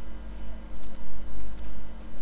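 Round watercolour brush stroking wet paint onto paper: a few short, soft scratchy swishes over a steady low electrical hum.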